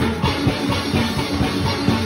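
A steel orchestra playing: many steel pans struck in rapid, rhythmic runs over drums and percussion, with a quadraphonic steel pan played close by.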